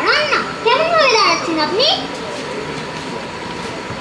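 Children's high-pitched voices speaking or calling out for about the first two seconds, then steady background noise with a faint thin hum.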